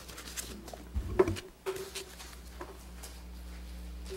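Scattered rustles of paper and small knocks picked up by desk microphones, over a steady low room hum; the loudest knock comes about a second in.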